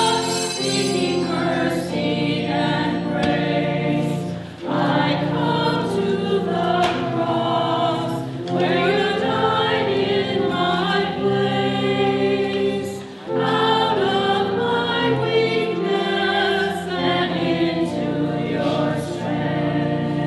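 Church choir singing a hymn with organ accompaniment, the choir pausing briefly between phrases twice.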